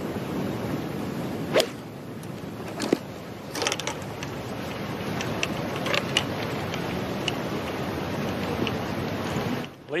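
A golf club striking the ball on a tee shot: one sharp click about a second and a half in, with a second, weaker click soon after. Under it runs a steady rushing noise, and it stops abruptly near the end.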